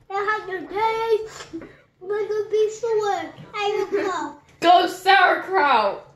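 A young child's voice in about five short phrases, in a sing-song way with level, held pitches and brief gaps between them.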